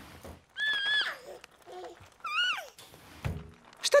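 An animated horse whinnying twice: a short wavering call, then a longer one that falls in pitch. A thud comes near the end.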